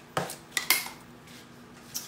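Light clinks of hard hair-colouring tools handled off-camera: three quick clicks in the first second, then only quiet room sound.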